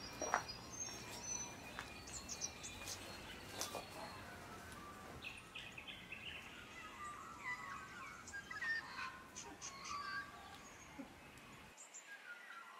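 Several small birds chirping and trilling over quiet outdoor ambience, with a few soft clicks and knocks in the first few seconds.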